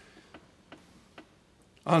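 A few faint, sharp clicks, about three spaced under half a second apart, in a quiet pause; a man's speaking voice resumes near the end.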